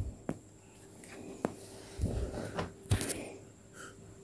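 Plastic clothes hangers clicking against each other and fabric rustling as an armful of laundry on hangers is handled: a few sharp separate clicks with soft rustling between them.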